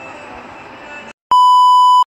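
A loud, steady, high test-tone beep cuts in about a second in, after a brief dropout. It is a broadcast-style test tone used as an editing sound effect, and before it there is only low background sound.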